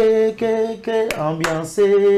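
A man singing a zouglou song a cappella in a few held notes that step down in pitch, with a couple of sharp clicks from his hands.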